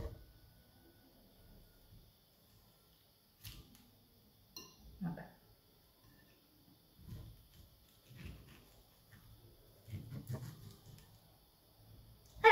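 Faint, scattered clicks and scrapes of a knife and fork against a plastic plate while peeling a prickly pear. A sharper tap comes right at the start.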